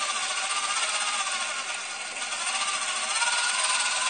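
Two small DC gear motors of a model car running steadily, with a whine that sags in pitch and level about halfway through and then climbs back as the speed knob is turned.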